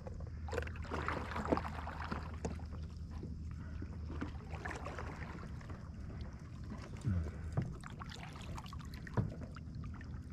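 Kayak paddle dipping and stroking through calm lake water, with splashing and dripping from the blade over a steady low hum.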